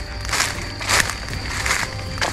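Footsteps crunching through a thick layer of dry leaf litter on a forest floor, three steps about two-thirds of a second apart.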